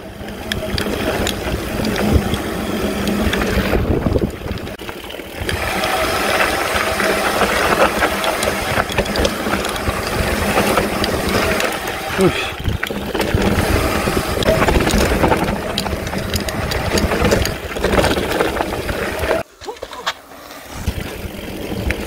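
Mountain bike descending a dirt trail, heard from a camera on the rider: steady wind rush on the microphone mixed with a constant rattle and clatter of the bike and its tyres on dirt and stones. It eases off briefly about four seconds in and drops away near the end as the bike comes to a stop.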